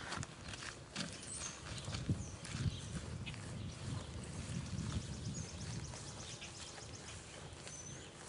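A boar grunting low as it is walked over grass, the grunts loudest about two to three seconds in, with scattered footfalls. Short high bird chirps and a rapid trill sound now and then.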